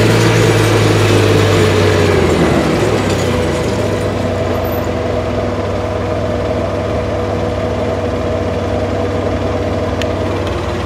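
A vehicle's engine running steadily. Its pitch drops a few seconds in and then holds level, as at an idle.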